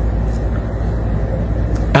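A steady low rumble of background noise, even throughout with no distinct events.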